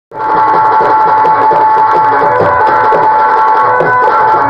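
Loud live folk-theatre music: steady held melodic notes over a repeating hand-drum rhythm.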